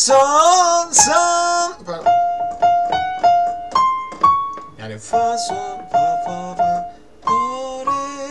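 Live acoustic rock performance: a wavering held melody note, then a piano playing a run of struck notes repeated on the same pitch, with the melody line coming back near the end.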